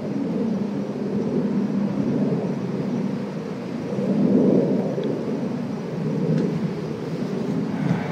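Steady low rumbling background noise with no voices, swelling briefly about four seconds in.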